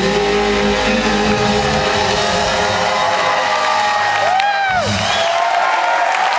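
A live rock band holds the final chord of a song over audience cheering. The band's sound drops away about three-quarters of the way in, leaving the crowd noise and a rising-and-falling shout.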